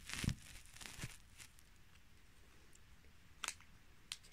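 Faint crinkling of a plastic cat-treat packet being handled: a few short crackles at the start, about a second in, and one sharper crackle near the end.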